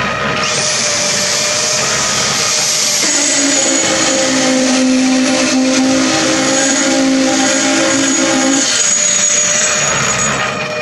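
Electric concrete poker vibrator running with its shaft in a freshly poured pillar, consolidating the concrete to drive out air bubbles and prevent honeycombing. Its motor's high steady whine starts about half a second in, and a lower steady hum joins from about three seconds until near the end.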